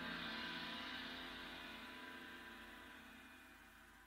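A gong or tam-tam stroke ringing out at the end of a piece of music, its bright upper ring swelling just after the strike and then slowly fading away.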